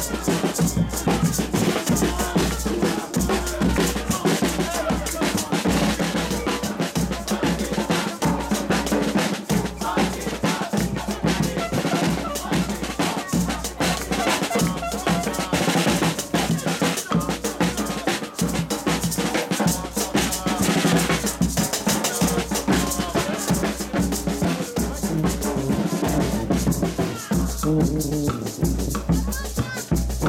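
Street brass band (fanfare) playing: a snare drum and cymbal keep a steady beat over a sousaphone's bass line and trombone.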